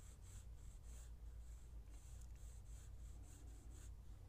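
Pencil scratching on drawing paper in a run of short, faint strokes, over a steady low hum.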